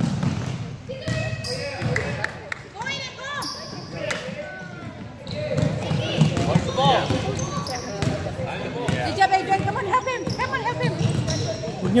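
A basketball bouncing on a hardwood gym floor during play, with short knocks scattered through, under a steady mix of players' and spectators' voices echoing in a large gym hall.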